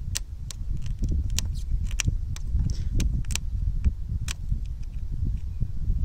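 Irregular light clicks and crackles of fingers positioning a vinyl overlay strip on a plastic grille bar, over a low rumble of wind on the microphone.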